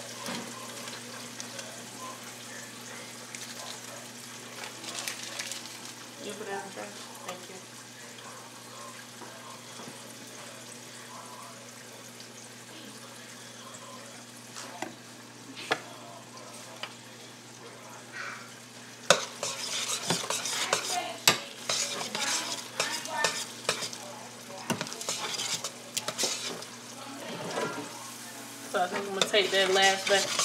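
A steady frying sizzle from the stovetop. From about two-thirds of the way in, a metal spoon stirs macaroni and cheese in a stainless-steel pot, with quick clicks and scrapes against the pot that get busier toward the end.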